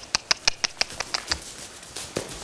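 A quick, even run of sharp mouth clicks, about seven a second, fading out about one and a half seconds in: a horse trainer clucking to ask the horse to move forward.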